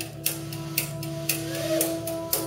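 Live rock band playing an instrumental passage: electric guitar holding sustained notes, with a pitch bend near the end, over bass and drums. A cymbal is struck about twice a second.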